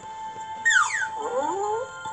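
Cartoon sound effect from an animated story app: a quick falling whistle-like glide, then wobbling rising tones, over light background music.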